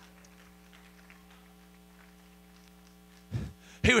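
Faint, steady electrical mains hum, a low buzz made of several fixed tones. A man's voice breaks in briefly just before the end.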